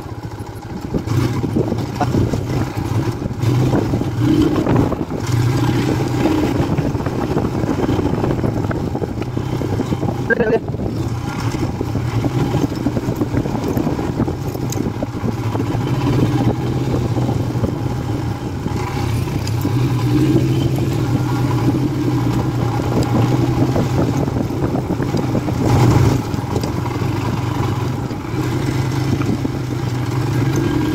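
Royal Enfield Himalayan's 411 cc single-cylinder engine running at a steady, moderate speed, its note swelling and easing a little with the throttle, with tyre noise from a dirt track.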